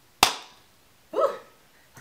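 A single sharp click from a makeup product being handled, such as a plastic compact or lid snapping, about a quarter second in, followed about a second later by a short, softer sound that bends in pitch.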